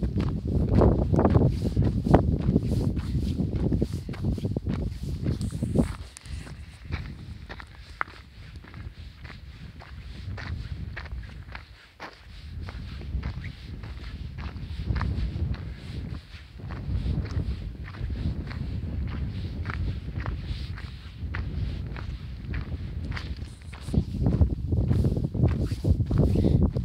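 Footsteps crunching on a stony gravel trail at a steady walking pace. A low rumble is loudest in the first six seconds and again near the end.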